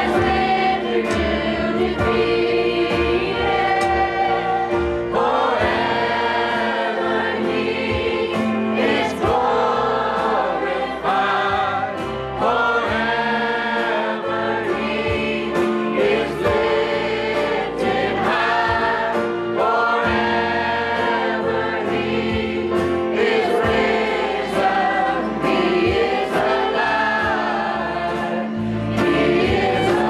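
Live contemporary worship music: a man and women singing together over acoustic guitar and a steady beat.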